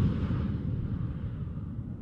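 Low rumbling tail of a whoosh transition sound effect, slowly fading out.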